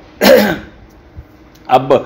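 A man clears his throat once, a short loud rasp, in a pause between spoken sentences.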